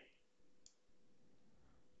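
Near silence: room tone, with one faint click about a third of the way in.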